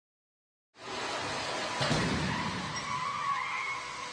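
Side-impact crash test of a Chevrolet HHR: a moving barrier slams into the car's side with a loud crunch about two seconds in. Tires squeal and scrub afterwards as the struck car is shoved sideways.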